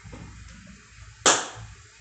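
A single sudden burst of noise a little over a second in, the loudest thing here, dying away within a fraction of a second, over a low steady hum.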